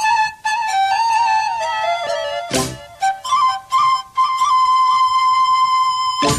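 Solo flute melody in an instrumental interlude of a Tamil film song, stepping through a short phrase, then holding one long note through the second half. A single drum stroke falls about two and a half seconds in.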